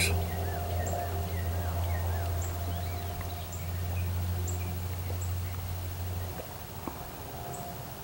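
Small birds chirping repeatedly in the background over a steady low hum that cuts off abruptly about six seconds in.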